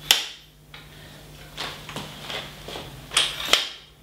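Camera tripod being handled as two of its legs are swung open and it is set upright: a scatter of sharp clicks and knocks, loudest in a pair of clacks near the end.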